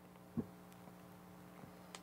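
Quiet room tone with a faint steady hum, one brief soft low sound about half a second in, and a few faint ticks.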